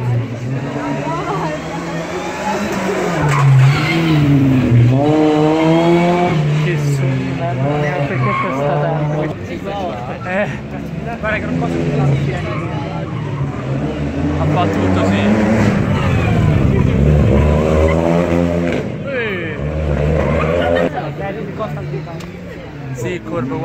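Rally car engine revving hard on the stage, its pitch climbing and dropping back several times as it accelerates and changes gear, loudest around a quarter of the way in and again past the middle, with voices underneath.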